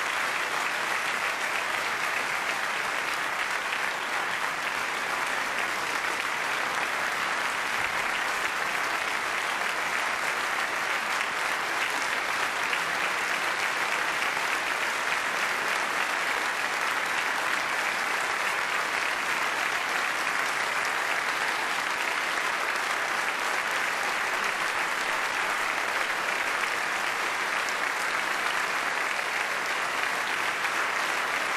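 Large audience applauding steadily and without a break in a large church.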